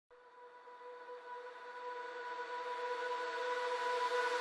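A single held tone with overtones, swelling steadily louder from near silence, as a lead-in to the cartoon's soundtrack.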